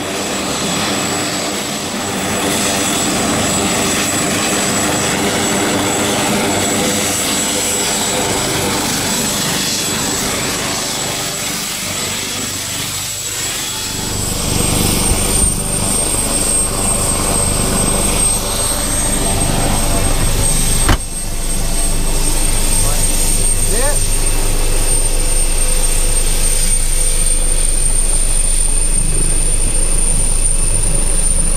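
Aircraft turbine engine running with a steady high-pitched whine that steps up in pitch about halfway through. A single sharp knock comes about two-thirds of the way in, after which a low steady rumble joins the whine.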